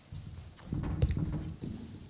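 Footsteps, then a run of thumps and rubbing as a lectern microphone is grabbed and adjusted, loudest about a second in.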